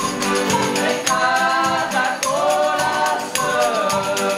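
Folia de reis group singing together in chorus, accompanied by button accordion, acoustic guitar and drum beats, a rural Brazilian devotional song.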